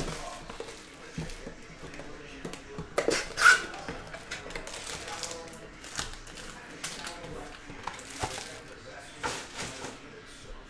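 A cardboard trading-card box being handled and opened and its foil card packs pulled out and set down: scattered knocks, scrapes and rustles, the loudest about three and a half seconds in.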